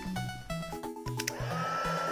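An embossing heat gun switches on about a second and a half in and runs with a steady blowing hiss and a high whine that rises briefly as it spins up, then holds level. It is warming UV resin to draw out air bubbles. Background music of short keyboard-like notes plays throughout.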